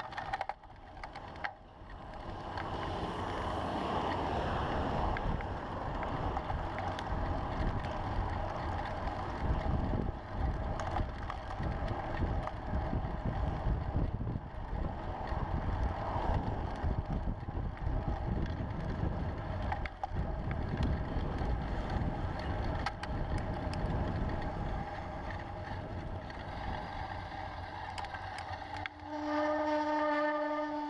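Wind buffeting a bicycle-mounted action camera's microphone over steady road and traffic rumble while riding through city streets. About a second before the end a steady horn note starts and holds.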